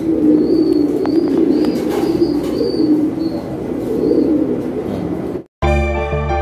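Several fancy pigeons cooing, overlapping low warbling calls, with short high chirps above them. Near the end the sound cuts out briefly and music begins.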